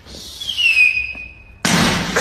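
Small firecracker going off: a hiss with a falling whistle for about a second and a half, then a loud bang.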